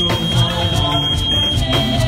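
Live church praise band music with a steady low beat. A single steady high-pitched tone is held over it and stops about a second and a half in.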